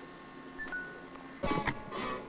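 Music from an FM radio playing in the room, picked up faintly by the camcorder's built-in microphone. A couple of brief knocks come about one and a half seconds in.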